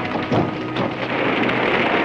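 A big barn fire crackling, the dense crackle building up about halfway through, with a couple of knocks near the start.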